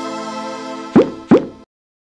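Channel outro jingle: a held musical chord fading out, then two quick rising plop sound effects about a second in, after which it cuts off to silence.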